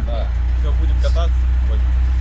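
A classic Lada Zhiguli's four-cylinder engine idling, a steady low hum, with faint voices over it.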